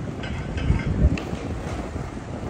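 Wind buffeting the microphone in low gusts, strongest about a second in, over the steady hum of city traffic, with a few faint clicks.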